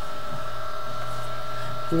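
A steady background hum made of several fixed tones over a faint hiss, unchanging throughout.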